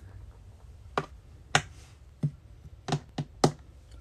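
Six sharp clicks made by hand, irregularly spaced and quickening towards the end.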